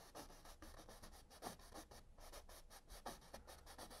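Faint, quick strokes of a paintbrush scratching across a wet oil-painted canvas, many short strokes in an uneven rhythm.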